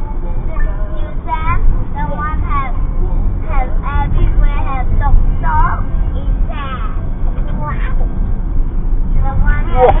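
Steady low rumble of a vehicle driving, heard from inside the cab, with people talking over it throughout; a short startled shout of "Oh!" right at the end.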